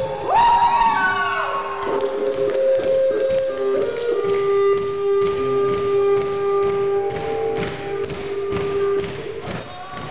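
Live rock band playing: a sung note sliding upward at the start, then long held notes over a steady drum beat.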